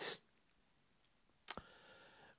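A single short, sharp click about one and a half seconds in, after a gap of near silence, followed by faint hiss.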